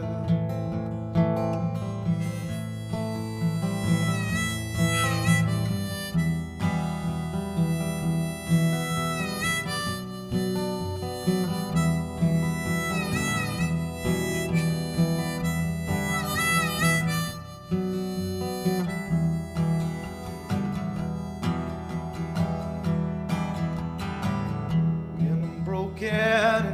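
Acoustic guitar strummed steadily under a harmonica melody of held notes that bend in pitch: an instrumental break in a folk song, with no singing.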